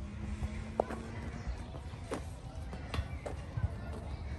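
A toddler's rubber boots stepping across the rungs of a metal playground climbing bridge, giving a few light, irregular knocks over a low rumble.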